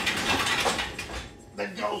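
Garage door closing: a rapid, even mechanical rattle that stops just over a second in as the door finishes coming down.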